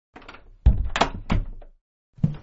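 Door sound effect: a wooden door shutting with a thud about two thirds of a second in, followed by two more knocks in quick succession.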